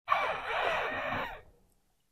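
A woman drinking from a plastic water bottle: one noisy, airy sip lasting about a second and a half, starting abruptly and then fading away.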